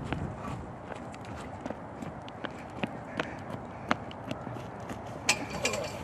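Footsteps: a series of sharp, irregular clicks, some coming roughly twice a second, over a steady background hiss. The loudest click falls about five seconds in.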